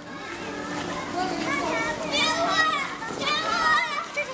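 Children's voices shouting and calling out over one another, high-pitched and overlapping, rising about a second in.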